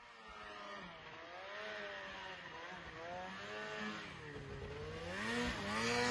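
Polaris snowmobile engine revving, its pitch rising and falling with the throttle, growing louder and higher toward the end.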